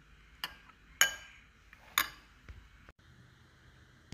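Metal spoon clinking against a ceramic bowl while stirring a sauce: about four short ringing clinks, the sharpest about one and two seconds in.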